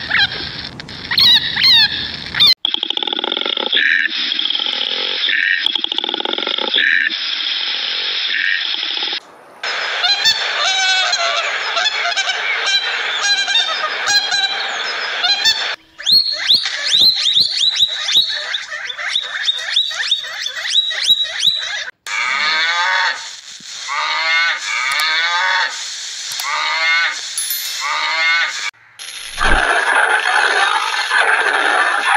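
A series of different animal calls, each one cut off abruptly and replaced by another every few seconds.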